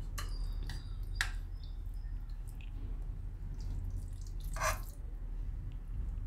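Soft, wet plops and light clicks as thick, moist khichdi is ladled onto a plate, with one louder splat shortly before the end, over a steady low hum.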